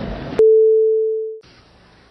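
Faint hearing-room noise, then a click and a single steady electronic tone, one pure mid-pitched note. It lasts about a second, fading a little before it cuts off abruptly. The tone is a cue tone marking a break in the broadcast recording.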